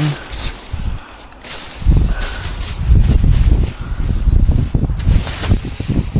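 Irregular low rumbling buffeting on the microphone, with rustling and a couple of sharp clicks as cushions are lifted and handled among plastic rubbish bags in a metal skip.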